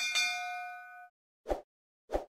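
A notification-bell 'ding' sound effect: a bell-like chime that starts suddenly, rings for about a second and fades out. About a second and a half in, a short pop.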